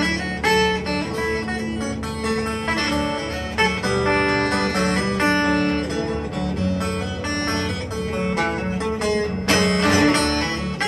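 Solo acoustic guitar playing a melody, single picked notes over lower ringing chord tones, at a steady moderate level.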